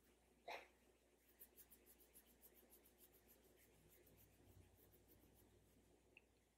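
Near silence: a short soft sound about half a second in, then faint, quick, even ticks, about four a second.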